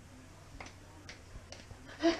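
Juggling balls landing in the hands: three faint soft catches about half a second apart.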